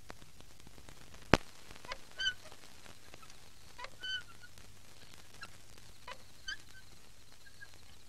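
Quiet background ambience with a low steady hum, broken by one sharp knock about a second in. A few short bird calls follow, spaced a couple of seconds apart.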